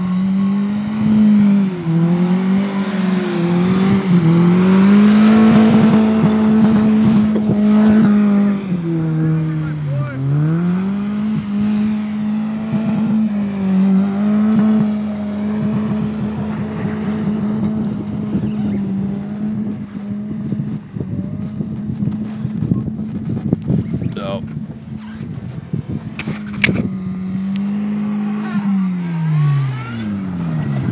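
A car engine held at high revs as the car spins donuts on loose lakebed dirt. Its note stays nearly steady, dips briefly a couple of times and falls away near the end, over a continuous rush of noise from the tyres and the wind. A couple of sharp knocks come late on.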